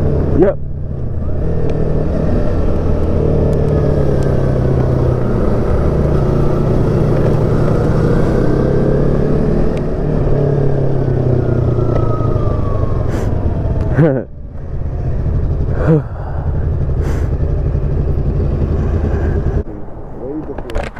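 Yamaha R1 sport bike's inline-four engine running at road speed, heard from the rider's own bike with wind rush. Twice near the end the engine note drops, then rises in a quick rev blip as the bike slows down.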